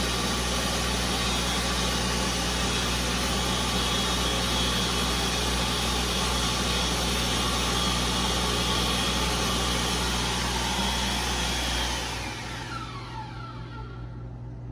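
Stainless-steel ASI Profile electric hand dryer running: a steady blast of air with a high motor whine. About twelve seconds in it shuts off and the motor winds down, its whine falling in pitch.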